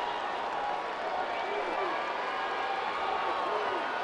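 Ballpark crowd noise: a steady wash of many voices from the stands, with faint scattered shouts.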